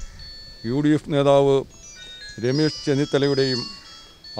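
A man speaking Malayalam into news microphones in two short phrases. Faint, short, high chime-like tones in a stepping melody sound in the pauses.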